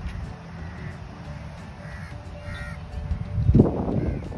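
Crows cawing a few times over a steady low rumble, with a louder rough burst of noise near the end.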